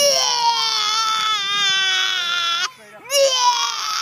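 A young child crying in two long wails: the first lasts nearly three seconds and slides down in pitch, then after a short break comes a second, shorter wail.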